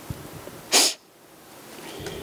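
A single short, sharp burst of breath noise from a man close to a handheld microphone, a little under a second in, sneeze-like and without voice.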